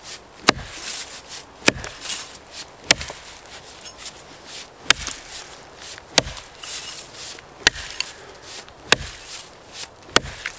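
Axe chopping into the base of a small birch trunk: seven sharp strikes, roughly one every second and a half, cutting a low notch close to the ground.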